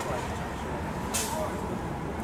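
Steady rumble of city street traffic, with one short burst of hissing air about a second in, from a bus's air brakes.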